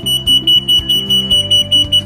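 Oil-level alarm buzzer on a Slick Stick control panel sounding a steady high-pitched tone, signalling that the oil layer in the separator has built down past the float switch and it is time to pump out. The tone cuts off at the end.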